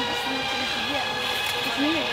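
Pigs screaming in a slaughterhouse gas chamber, a wavering rise-and-fall cry over a steady machine hum, heard from footage played on a tablet's speaker.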